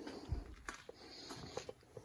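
Footsteps in a dark indoor hallway, with a dull low thump about a third of a second in and scattered small clicks and crunches.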